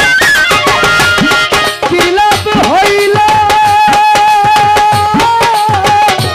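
Violin playing a Baul folk melody over a hand drum keeping a steady beat, its bass strokes sliding up in pitch. From about three seconds in, the melody holds one long high note.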